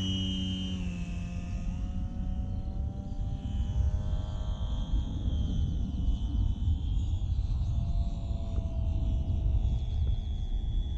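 Electric contra-rotating propeller drive of an F3A aerobatic model plane (Dualsky CRS3000) whining as the plane takes off and flies past, its pitch drifting slowly as it moves away. Under it is a steady low rumble.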